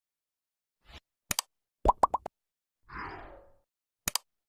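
Short animation sound effects over otherwise dead silence: a click, then three quick pops about two seconds in, then a brief soft swoosh near the end.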